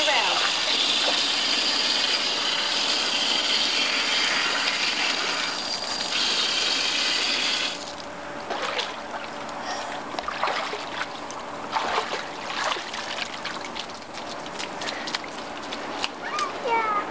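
Water running in a steady rush, rinsing something off a toddler's leg. It cuts off suddenly about halfway through, leaving faint knocks and distant voices.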